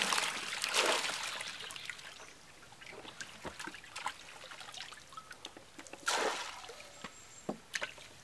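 Water trickling and dripping from a wet mesh net and a plastic bowl as small fish are scooped out, with many small wet clicks and patters. Short splashy pours of water at the start and again about six seconds in.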